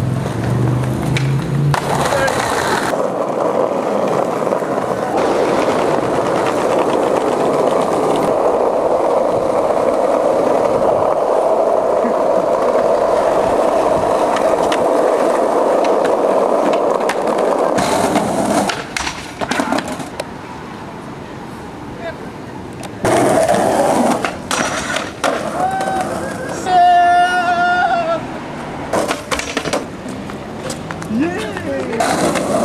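Skateboard wheels rolling over concrete sidewalk: a long, steady roll of about fifteen seconds, with a few clacks of the board in the first seconds.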